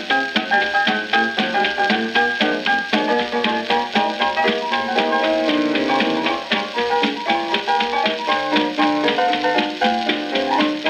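A 1928 hot-jazz trio record played from a 78 rpm shellac disc: piano, clarinet and drums playing at a steady, bouncing beat, with the narrow sound of an early recording.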